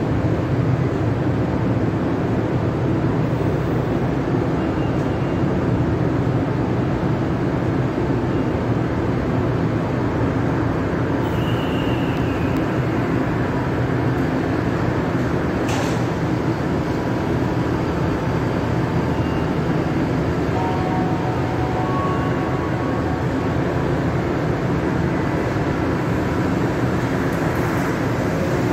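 Steady low rumbling hum of a Montreal metro MR-73 train standing at an underground platform, with one sharp click about halfway through.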